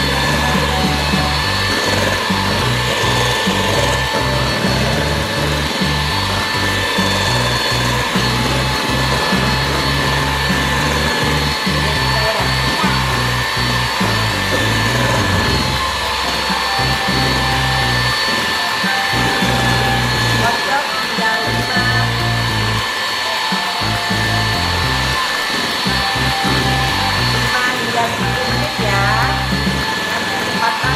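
Electric hand mixer running at high speed, its beaters whipping instant ice cream powder and cold milk in a stainless steel bowl, with a steady motor whine. Background music plays underneath.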